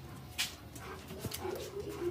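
A dog whimpering faintly in the second half, after a short sharp noise about half a second in.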